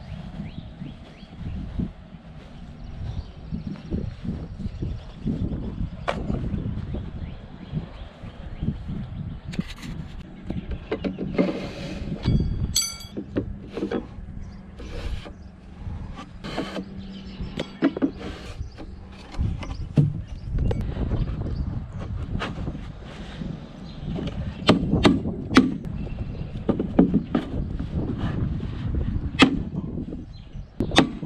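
Hammer blows driving spikes through landscape edging blocks into soil: irregular sharp knocks, heavier and more frequent in the last third, with one strike about halfway through that rings metallically. Handling and shifting of the edging blocks adds low knocks and rustle between blows.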